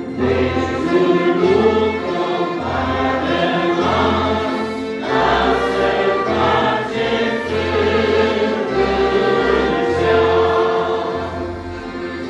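A small church band of clarinet, trumpet, accordion, electronic keyboard and acoustic guitar playing a hymn, with voices singing along.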